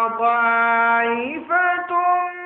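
A male Qur'an reciter's voice in melodic tilawat, amplified through a microphone: one long held note, then a short break and a rise to a higher held note about one and a half seconds in.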